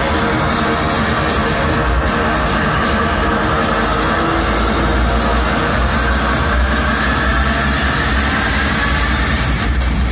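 Rock music with electric guitar and a steady drum beat, played over a stadium's loudspeakers for the teams' walk-out.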